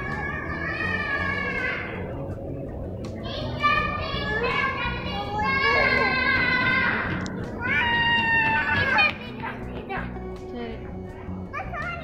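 A high-pitched voice sounds in held, wavering pitched notes in three spells, over music with a steady low beat.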